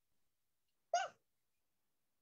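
A single short, high-pitched vocal sound about a second in, its pitch rising and then falling.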